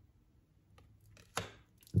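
A tarot card being laid down on the cloth-covered table among the spread cards: one light tap with a brief rustle a little past halfway, after a few faint ticks of handling.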